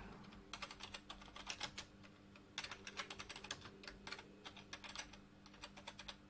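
Computer keyboard typing: faint, uneven runs of keystrokes as a line of text is entered, over a low steady hum.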